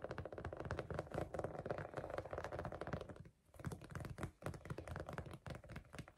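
Fingertips tapping and scratching fast on a tufted rug and fabric: a dense run of quick taps, with a brief pause a little past halfway.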